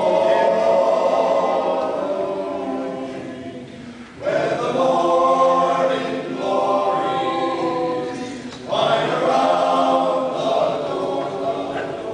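Men's a cappella ensemble singing in close harmony without accompaniment, in sustained phrases that break off briefly about four seconds in and again near nine seconds.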